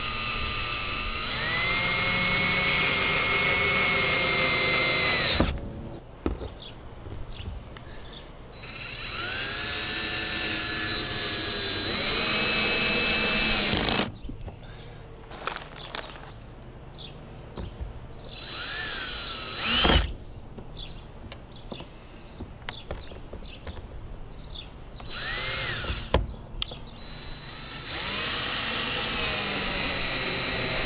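Cordless drill driving screws through the fan's mounting flange into the RV roof: several runs of motor whine, each rising in pitch as it spins up, the longest about five seconds, with quieter pauses between screws. A sharp knock sounds about twenty seconds in.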